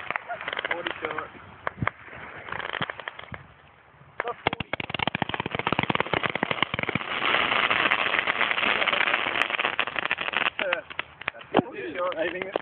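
42-shot firework cake firing: a few scattered pops, then from about four seconds in a rapid run of bangs that thickens into a dense crackle and thins out again near the end.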